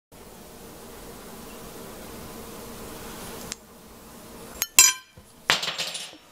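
Steady hiss with a faint hum, cut off suddenly about halfway through. Soon after come a couple of sharp metallic clinks with a short ring, like a metal spoon knocking against a dish, and then a brief rustling noise near the end.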